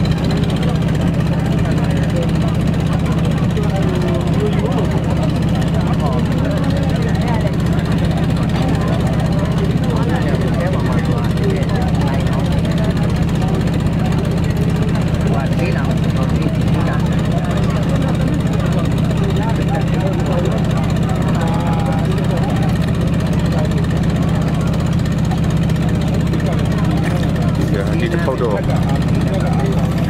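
Steady low drone of a running motor engine, with a man talking over it.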